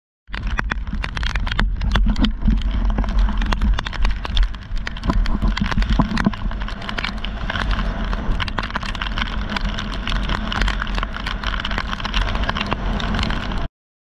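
Strong wind buffeting an action camera's microphone: a heavy low rumble with constant crackling, cutting off suddenly near the end.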